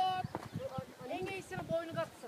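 Faint women's voices talking, with irregular footsteps knocking on bare rock.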